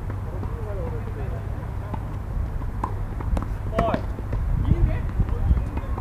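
A few sharp tennis-ball knocks on an outdoor hard court, bunched in the middle, over a steady low rumble, with people talking faintly.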